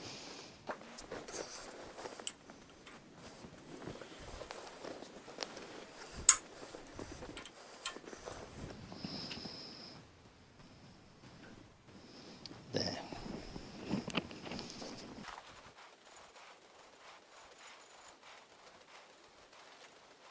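Faint handling noises from turning an engine's crankshaft by hand with a breaker bar and socket on the crank pulley nut: light scrapes, clothing rustle and small metal clicks, with one sharper click about six seconds in.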